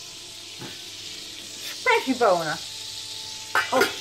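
Pan of hot fat sizzling steadily on the stove.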